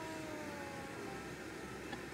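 Steady low hum of a car's interior, the noise of the car running.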